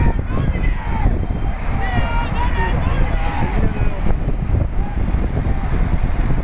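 Rush of wind on the microphone and road noise from cars travelling at highway speed, with voices calling out over it.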